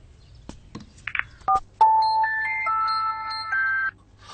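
Mobile phone ringtone: an electronic melody of held notes stepping between pitches, which cuts off suddenly near the end as the call is answered.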